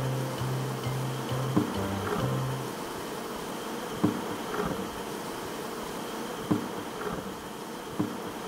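Western honeybees buzzing as a crowd at a hive entrance, with single bees flying close past now and then as brief rising hums. Low music plays under it for the first few seconds, then stops.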